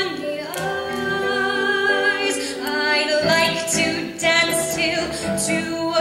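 Solo female voice singing a Broadway show tune into a microphone over musical accompaniment, with vibrato on the held notes.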